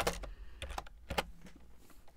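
Computer keyboard typing: a scattering of irregular key clicks, most of them in the first second and a half.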